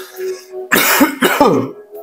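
A man clears his throat once, a rough sound of about a second starting near the middle, dropping in pitch at its end.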